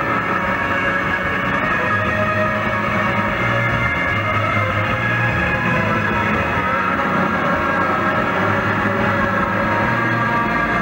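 Live rock band playing loudly: electric guitar and bass in a dense, sustained, droning wash with no clear vocals. It is captured as a muffled audience bootleg on a MiniDisc recorder, with little treble.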